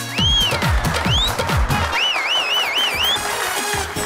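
Show-music sound effects: a high whistle-like tone arching up and down, then warbling up and down for about a second, over a run of falling low sweeps. A noisy wash of hand-clapping runs beneath them.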